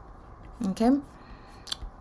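Spoken narration: one short word, "okay", over faint room hiss, with a single short click near the end.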